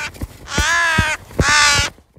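A crow cawing: two long caws about a second apart, with the tail of another caw as it begins.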